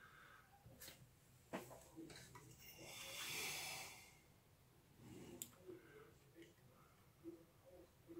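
Near silence, with a few faint handling clicks as a 3D-printed plastic device is turned in the hands, and a soft breath about two to four seconds in.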